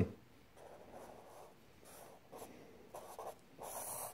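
Black felt-tip marker drawing on lined paper: about five short, faint strokes as an arrow is drawn.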